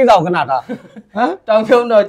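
Men talking, broken by a chuckle.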